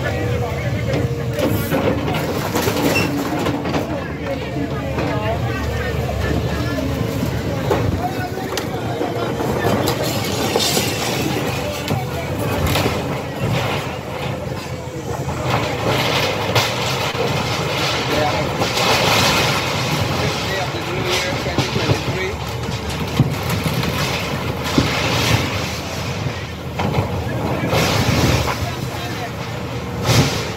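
A Caterpillar excavator's diesel engine running while its bucket tears down wooden and sheet-metal houses, with several crashes of breaking timber and metal. Voices of people on site can be heard in the background.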